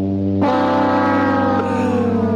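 Loud, sustained horn-like tones over a steady low drone; a higher tone comes in about half a second in and slowly sags in pitch.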